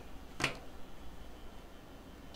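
A single sharp click about half a second in, as a plastic remote control is picked up off the top of the outdoor unit's casing, followed by quiet room tone.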